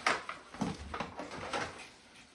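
Handling noise from unpacking a cardboard box of tennis string reels and packets: a sharp knock at the very start, then light rustling and a few soft bumps, growing fainter toward the end.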